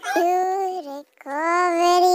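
A high-pitched voice singing two long held notes, each about a second long, with a short break between them.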